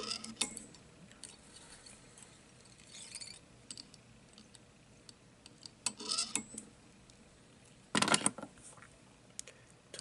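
Faint clicks and rustles of thread and fly-tying tools being handled at the vise as red thread is wrapped behind the bead, with a louder short rustling clatter about eight seconds in.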